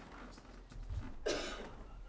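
A single short cough about a second in, over faint room hum.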